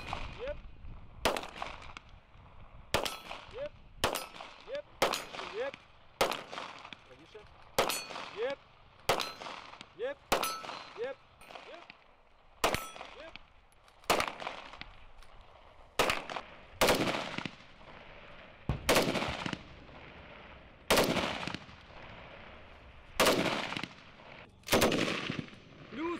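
Single pistol shots from a Ukrainian-made Fort pistol, about twenty in all, fired one at a time roughly a second apart and more slowly toward the end. Some are followed by a brief metallic ring from a hanging steel plate target being hit.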